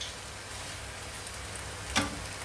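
Noodle stir-fry sizzling steadily in a frying pan, with one sharp knock of the spatula against the pan near the end.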